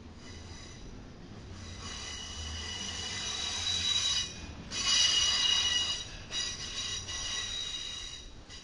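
Wheels of a passing double-stack intermodal freight train squealing against the rail: several high, steady ringing tones build up over the first few seconds and are loudest about halfway through, cutting out briefly twice, over a low rolling rumble.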